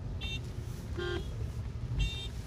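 Steady low engine and road rumble inside a car driving a mountain road, with two brief horn toots, one just after the start and one about a second in.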